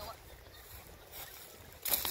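Low rumble of wind on the microphone outdoors, with a short, loud rush of noise near the end.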